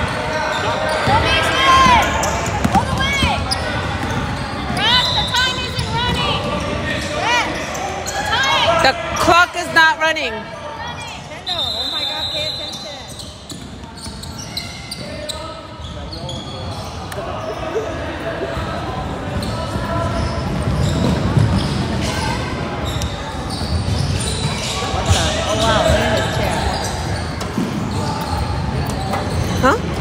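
Youth basketball game on a hardwood gym floor: sneakers squeaking in many short high squeals, a basketball bouncing, and voices echoing around the hall.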